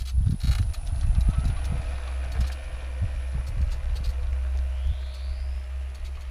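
Electric motor of a Krot cultivator, run through a frequency converter set to 50, starting up and running with a steady whine as it pulls a plough through soil, with irregular low knocking and thudding from the wheels and plough.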